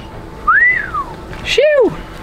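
A person whistles one note that rises, then falls away, followed by a short exclaimed "shoo!"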